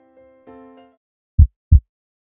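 Soft keyboard notes fade out, then a heartbeat sound effect comes in about a second and a half in: two low thuds close together, a lub-dub double beat.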